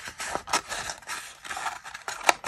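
A sheet of green paper being curled into a cylinder by hand: rustling and crinkling with a few sharp crackles, the loudest about half a second in.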